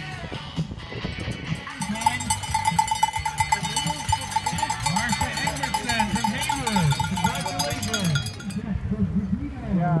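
A cowbell shaken rapidly, ringing and clattering from about two seconds in until shortly before the end, over spectators' shouts of encouragement.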